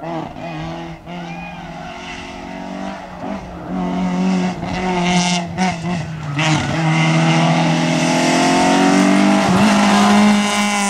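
Peugeot 205 GTI rally car's four-cylinder engine running hard up a twisty climb, the note dipping and breaking a few times around the middle as the driver lifts off and changes gear. It then pulls steadily and grows louder as the car comes closer.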